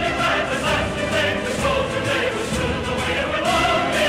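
A choir singing long held notes with instrumental backing, part of a medley of American Civil War songs.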